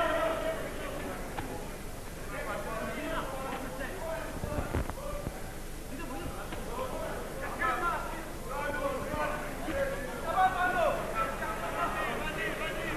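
Mostly voices talking over the fight, in the manner of broadcast commentary, with a brief low thump about four and a half seconds in.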